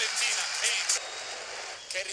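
Televised football match sound: stadium crowd noise with brief commentary, dropping to a quieter, even crowd hum about a second in as the broadcast cuts to another game.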